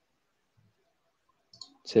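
Near silence in a quiet room, broken by a short faint click about a second and a half in; a voice starts at the very end.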